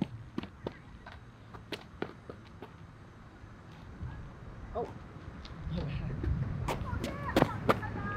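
Outdoor ambience: a low rumble that grows louder in the second half, with scattered light clicks and taps, the sharpest ones near the end.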